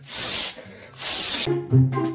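Two loud half-second bursts of rasping noise, about a second apart, then a cut about one and a half seconds in to a bouncy tune with a bass line.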